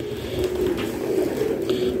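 Low rustling handling noise as a racing pigeon is shifted and turned over in a man's hands close to the microphone.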